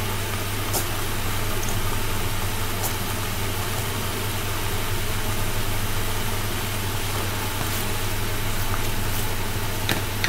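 Steady machine hum with an even hiss, unchanging throughout, with a few faint clicks.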